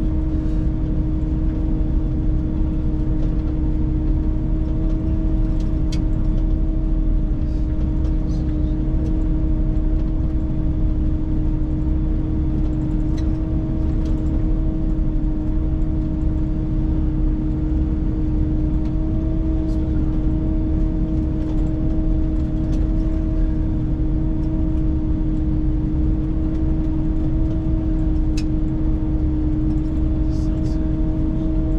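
Snowcat grooming machine driving steadily along a snow trail, heard from inside its cab: a constant low engine rumble with a steady, unchanging hum over it.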